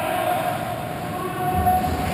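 Steady background noise of an indoor ice rink during play: a continuous rumble with faint held tones over it. A deeper rumble swells near the end.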